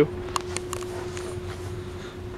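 Room tone: a steady, even hum with a few light clicks in the first second.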